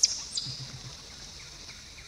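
Quiet outdoor background with a steady high-pitched hiss, broken near the start by a brief sharp sound and a short high chirp.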